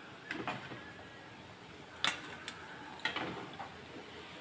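A few faint clicks and light knocks from a perforated stainless steel plate being handled, the sharpest about halfway through.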